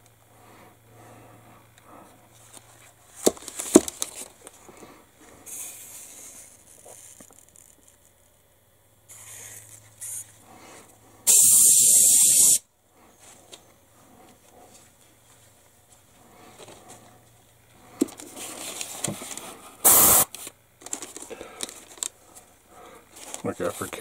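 Airbrush spraying acrylic paint in short bursts of hiss. The loudest burst comes about eleven seconds in and lasts a little over a second, with a brief sharp one near twenty seconds and softer sprays between. A few knocks from handling come around three to four seconds in.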